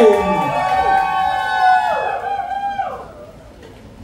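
A single voice singing a few held notes that slide downward, dying away about three seconds in, then a quiet hall background.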